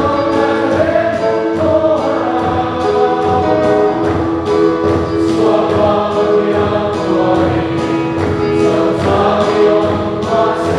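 A choir singing a gospel hymn, with sustained notes and an instrumental accompaniment keeping a steady pulse.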